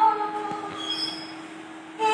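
A woman's held sung note fading away in the first half second or so, then a short pause between sung phrases. The pause holds only faint, thin high tones over a steady low hum.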